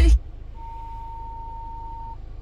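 Kia Sorento car radio muting as it is tuned off an FM station, leaving a faint low hum. A single steady high tone sounds for about a second and a half, starting about half a second in.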